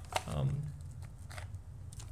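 Hands handling a small laser-cut wooden pinhole camera box: a sharp click near the start, then a few faint taps and scrapes as a small part is pulled off its top.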